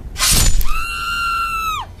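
A sudden loud crash, then a long, high-pitched scream that holds steady for about a second and drops away at the end.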